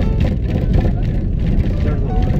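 Steady rumble of a moving vehicle's road and wind noise, with a song with a singing voice playing over it.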